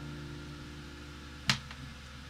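The last strummed chord of an acoustic guitar dying away, then a single sharp click about one and a half seconds in, with a fainter click just after.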